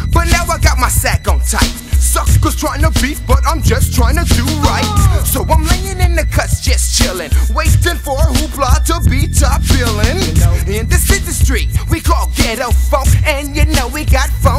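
A 1990s G-funk gangsta rap track: a rapped vocal over a heavy, steady bassline and drum beat.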